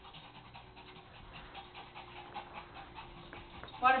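A small dog panting after play, in quick, faint breaths; a voice says "water break" at the very end.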